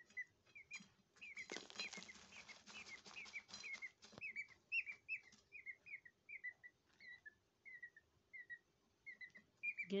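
A peachick (Indian peafowl chick) softly peeping, a steady string of short downward-sliding chirps about two a second, while it dust bathes, with the rustle and scratch of loose soil stirred by its body and wings, loudest in the first few seconds.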